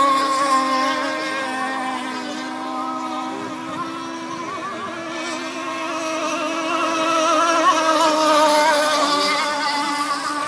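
Engine of a radio-controlled rigger racing boat running at high revs on the water, a steady high buzzing note. It fades somewhat in the middle and grows louder again near the end as the boat comes back around the course.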